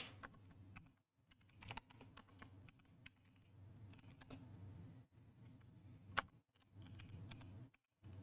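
Faint, scattered computer-keyboard typing and key clicks, with one sharper click about six seconds in.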